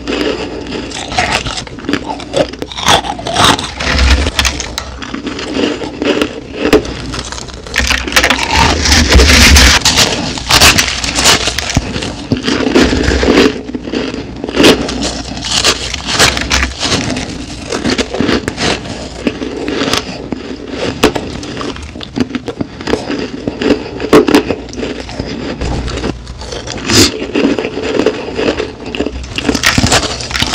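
Close-miked biting and chewing of mouthfuls of crushed ice: a dense, continuous run of sharp crunches and crackles.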